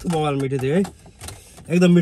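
A man talking, with a short pause in the middle.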